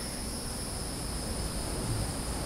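Steady high-pitched drone of insects such as crickets, over faint background noise.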